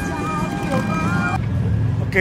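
A song with a voice cuts off about a second and a half in, leaving a steady low rumble of motorcycle engines idling.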